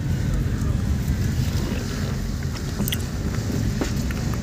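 A car driving slowly, heard from inside: a steady low road and engine rumble.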